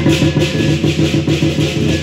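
Lion-dance drum, cymbals and gong playing a rapid, steady beat with a continuous crash of cymbals, accompanying the lion on the poles.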